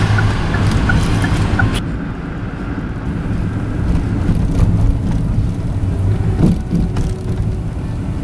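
Car driving noise heard from inside the cabin: a steady low engine and road rumble. About two seconds in, the hissy upper part of the sound drops away suddenly and the rumble carries on duller.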